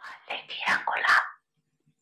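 A person whispering for about a second and a half, then stopping.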